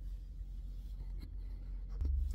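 Low steady rumble of a car cabin with faint rustling of the combs' card packaging as they are held up in the hand.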